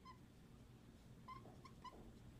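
Dry-erase marker squeaking on a whiteboard in faint, short chirps: one at the start, then three close together in the second half.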